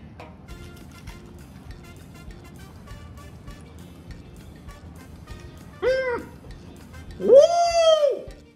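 Quiet background music, then two short, high-pitched cries that rise and fall in pitch. The second, near the end, is louder. They come as a reaction to a bite of a flaming-hot Cheetos macaron.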